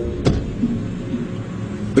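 A car engine running steadily, with a brief click near the start.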